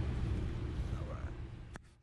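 A low, steady rumble that fades out gradually, with a single sharp click just before it cuts to silence.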